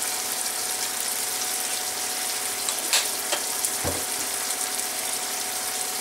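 Small borettane onions frying in a pan of olive oil and balsamic glaze, a steady sizzle throughout. A couple of light clicks come about halfway through, followed by a soft knock.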